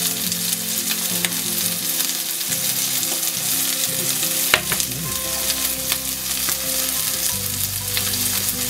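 Hot fat sizzling and crackling in a frying pan, a steady hiss with fine pops, under soft background music of held notes that change every couple of seconds. A single sharper click about four and a half seconds in.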